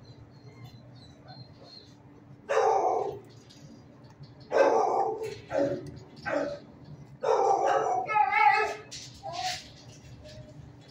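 A dog barking in the shelter kennels, in about six short bursts starting a couple of seconds in, over a low steady background hum.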